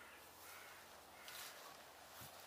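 Near silence: faint outdoor ambience with a few distant bird calls, and a soft rustle about a second and a half in.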